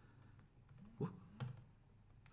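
Faint clicks of computer keys as the presentation slides are advanced, with a man's short hesitant 'uh' about a second in.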